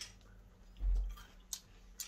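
Mouthfuls of Kellogg's Krave cereal being chewed, with a couple of small spoon clicks against a ceramic bowl. A dull low thump comes a little under a second in.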